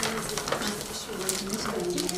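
Crinkling and rustling of foil packaging bags as gloved hands handle and fill them, over a murmur of voices.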